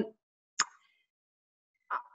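Near-silent pause on a video call, broken by a single short, sharp click about half a second in; speech resumes at the very end.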